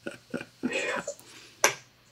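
Soft handling noise as a book is reached for on a shelf: a few short clicks, a faint murmur of voice, and a sharper click about a second and a half in.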